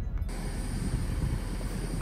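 A brief quiet car-cabin hum cuts off abruptly and gives way to steady outdoor background noise: a low rumble and hiss with a thin, steady high whine over it. The outdoor noise is loud, with no single event standing out.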